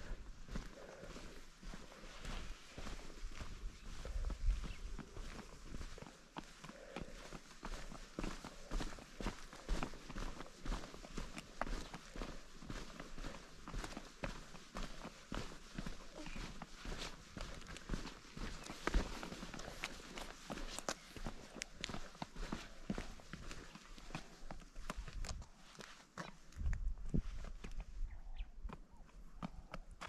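Footsteps on sandy, gravelly ground: a long run of irregular light steps, with a few low rumbles along the way.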